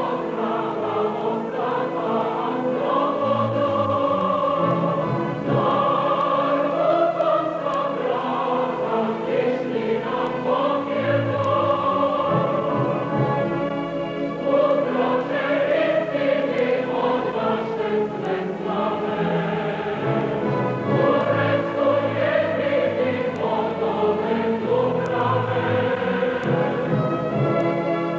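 A choir singing with long held notes over instrumental accompaniment.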